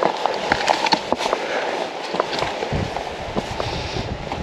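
Footsteps scuffing and clicking irregularly on a rough stone path, over a steady hiss, with a low rumble coming in about two-thirds of the way through.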